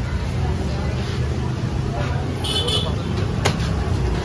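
Steady low rumble like road traffic, with indistinct background voices and a single sharp knock about three and a half seconds in.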